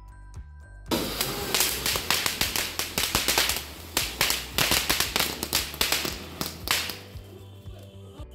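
Ground fountain fireworks (flower pots) spraying sparks: a loud, dense hiss packed with rapid crackling. It starts suddenly about a second in and fades about seven seconds in. Background music with a beat plays before and after it.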